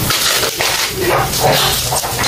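Plastic packaging rustling and crinkling in irregular bursts, as a parcel of cellophane-wrapped artificial flowers is handled and opened.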